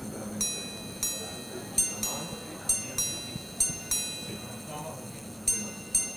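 Minute repeater of a Jaquet Droz pocket watch chiming on its gongs: a series of about ten bright, ringing strikes at uneven intervals, some in quick pairs.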